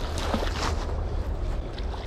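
Flowing river water and a hooked rainbow trout splashing at the surface, a few brief splashes in the first second, over a steady low rumble of wind on the microphone.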